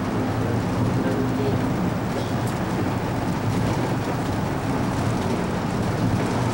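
Trolley-style tour vehicle driving at a steady speed: an even engine and road rumble heard from inside the open-windowed cabin.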